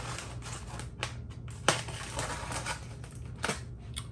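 Irregular crackling and scratching as packing tape is picked and peeled off a styrofoam shipping box, with a couple of sharper clicks.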